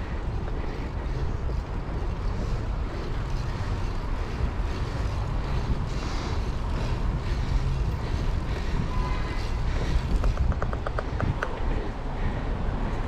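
Wind buffeting an action camera's microphone while cycling, a steady low rumble. Near the end comes a quick run of light ticks.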